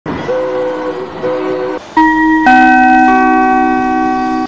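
Train horn: two short blasts, then a long blast of several notes held together as a chord.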